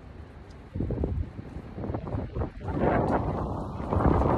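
Wind rumbling on a phone's microphone: irregular gusts from about a second in, building to a louder, steadier rush near the end.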